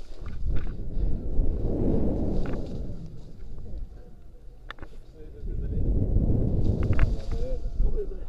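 Wind buffeting a helmet-mounted action camera's microphone as a rope jumper swings on the rope, rising in two rumbling swells, with a few sharp clicks between and during them.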